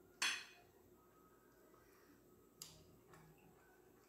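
A metal fork knocking against a ceramic dinner plate while cutting a piece of meatloaf: a sharp clink about a quarter second in, a second shorter clink past the middle, and a faint tap just after.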